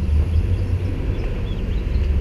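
Steady low outdoor rumble, heaviest in the bass, with no distinct events.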